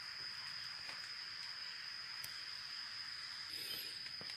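Insects singing one steady, unbroken high-pitched tone over a soft hiss.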